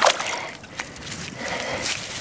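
Stream water splashing and trickling as a dug-up pottery pig figurine is swished and rubbed clean in it by hand, with a sharp splash at the start and another near the end.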